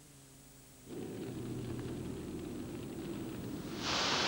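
Near silence for about a second, then a low, steady rumbling drone starts, and a loud hiss bursts in right at the end: the sound effects opening a TV advert's soundtrack.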